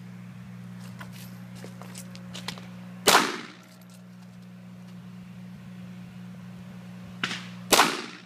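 Ruger 22/45 Mark III .22 LR pistol firing: one sharp shot about three seconds in, with a short echo off the range walls, and another near the end, right after a fainter crack.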